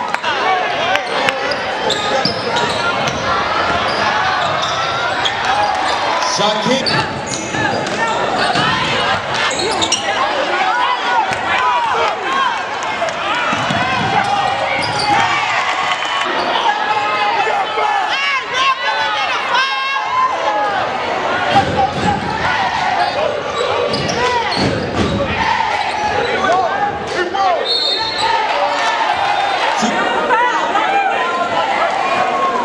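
Live sound of a basketball game in a gym: the ball being dribbled on the hardwood floor, over a steady din of crowd voices talking and shouting.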